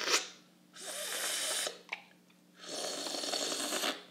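Coffee slurped from a cupping spoon: two slow, airy sucks of air and coffee, each lasting about a second, with a short click between them. These are deliberately slowed cupping slurps that spray the coffee across the palate.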